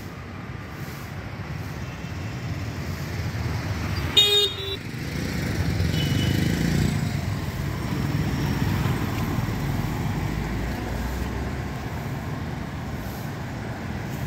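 City street traffic, a steady low rumble of engines and tyres. About four seconds in, a vehicle horn gives one short, loud honk, and a brief higher beep follows about two seconds later. The rumble swells for a few seconds as a vehicle passes close.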